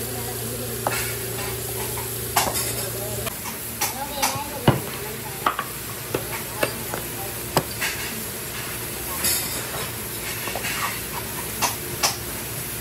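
Hammer tapping small nails through a vinyl cover into a wooden tricycle seat base: irregular sharp knocks, roughly one every second or so, the loudest near the middle. A steady hum runs under the first three seconds and then stops.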